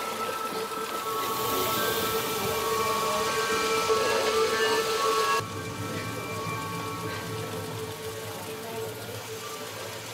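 Background music of sustained held tones over a steady, rain-like hiss, with the sound changing about five seconds in.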